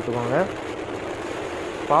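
Royal Enfield Meteor 350's single-cylinder engine running steadily while the motorcycle cruises, heard from the rider's seat as an even mix of engine, wind and road noise, after a last word of speech at the start.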